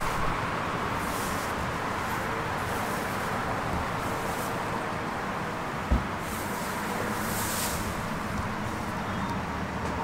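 Steady outdoor traffic noise, with a few swells as vehicles pass and a single low thump about six seconds in.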